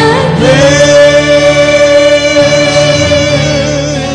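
Gospel worship singing with instrumental backing; a voice holds one long note from about half a second in, fading near the end.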